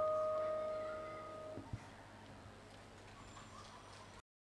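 The last held note of a live band's song ringing out and fading, cut off about one and a half seconds in, followed by faint background noise.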